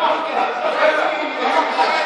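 Several voices talking over one another, crowd chatter in a large sports hall.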